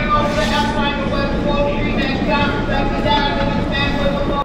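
New York City subway car standing at a station platform: a steady low hum from the train under overlapping, indistinct chatter of passengers.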